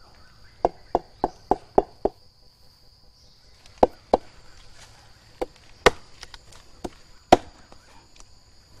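A large knife tapping the trunk of an agarwood (Aquilaria) tree: a quick run of about six knocks, some four a second, then scattered single knocks. The tapping tests the trunk for a hollow sound, the sign that the agarwood is ready to harvest, and this tree is judged ready.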